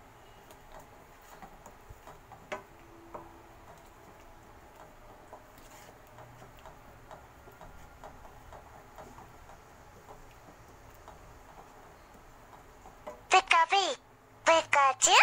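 A wooden spatula stirring thick masala paste in a frying pan: soft, irregular scraping with small ticks and taps. Near the end there is a short, loud voice-like sound.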